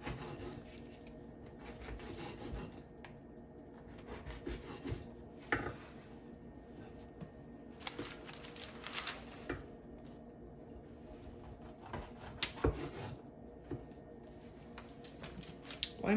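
A long knife sawing back and forth through a loaf of soft bread on a wooden cutting board, with scattered sharp knocks as the blade meets the board.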